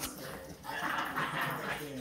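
A Boston terrier and a French bulldog making dog noises as they play tug-of-war, with a television voice talking underneath.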